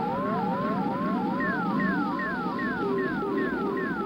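Electronic space-flight sound effect from a cartoon soundtrack: overlapping swooping tones, about three a second, over a low hum. At first the tones rise; from about a third of the way in, falling swoops from a higher pitch join them.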